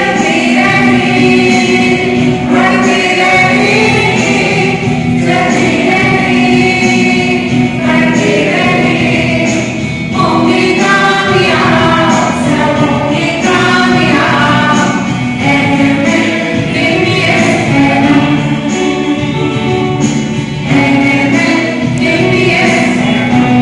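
A group of school students singing a song together in chorus, loud and continuous.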